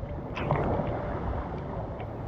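Sea water lapping and sloshing right at the microphone, with a few small splashes about half a second in.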